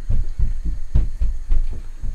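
Wooden spoon stirring chicken curry in a wok, with a run of low thumps, several a second, as the pan is worked.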